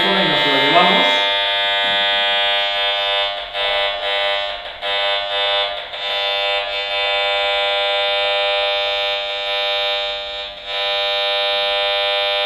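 Handheld RF meter's audio output giving a steady, harsh electronic buzz as it picks up the pulsed radio signal of a Gigaset AL170 DECT cordless phone. The buzz wavers in loudness for a few seconds around the middle and dips briefly near the end. It is the sign that the phone is transmitting, running in its normal mode rather than its eco mode.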